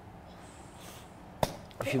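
Quiet room tone broken by a single sharp click or knock about a second and a half in, followed by a man's voice near the end.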